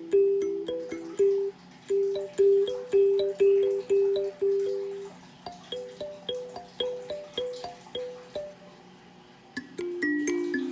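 A wooden kalimba (thumb piano) played by hand: a slow melody of single plucked metal tines, each note ringing and fading. The notes come about two or three a second. The playing pauses briefly near the end before a new, lower phrase begins.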